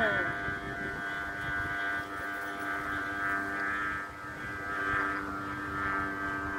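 Bamboo kite flutes (sáo diều) on a Vietnamese flute kite droning in the wind, several fixed pitches sounding together as one steady hum, over low wind rumble.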